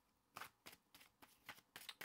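A deck of tarot cards being shuffled by hand: a quick, uneven run of soft card slaps and riffles, about four a second, starting about a third of a second in.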